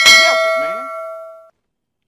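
A single bell-like ding, struck once and ringing with several steady tones that fade over about a second and a half before cutting off.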